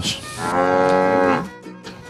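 A cow mooing once, a single drawn-out call lasting a little over a second that rises slightly and falls away at its end.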